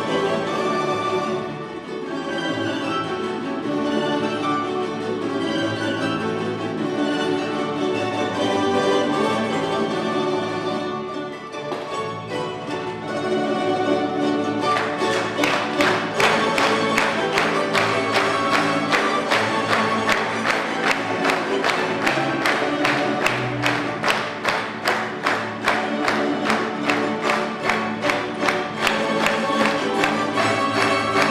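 Tamburica orchestra (small plucked tamburicas with bass) playing an ensemble piece. The first half is flowing and sustained; from about halfway it turns into a lively passage of evenly pulsed, sharply plucked chords.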